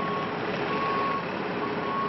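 A tow truck's backup alarm beeping, each beep about half a second long with short gaps, over steady traffic noise.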